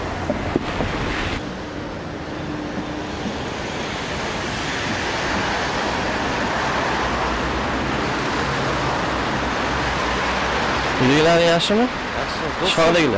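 A steady, even rush of distant city traffic noise that grows slightly louder.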